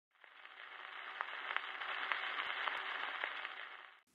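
Surface noise of a 78 rpm gramophone record playing before the music starts: a steady hiss with scattered clicks and crackles. It fades in at the start and out near the end.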